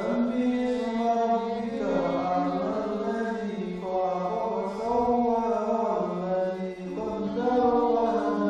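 A voice chanting a slow melody in long, drawn-out notes that waver and bend in pitch, with a short break about seven seconds in, with music behind it.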